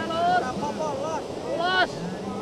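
Short voice calls, once near the start and again near the end, over a steady background hiss.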